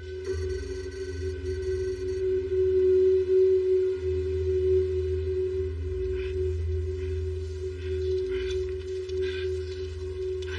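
Film soundtrack: a steady, sustained droning tone over a low rumble, with a high electronic chirping during the first two seconds and a few short, faint higher sounds later.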